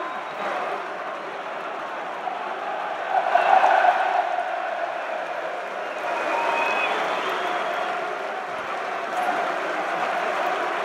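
Football stadium crowd: many voices chattering and calling with scattered applause, swelling louder about three seconds in.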